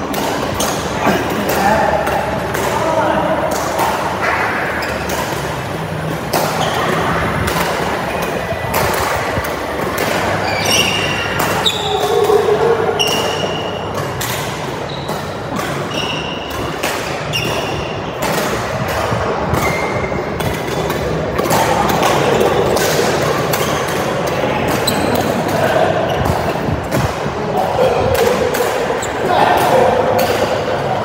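Badminton play in a large, echoing hall: rackets striking the shuttlecock in repeated sharp hits, with short high squeaks of shoes on the court floor.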